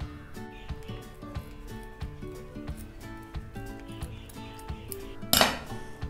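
Background music throughout, with light clicks from metal scissors snipping cloth. Near the end the scissors are set down on a glass tabletop with one loud, short clatter.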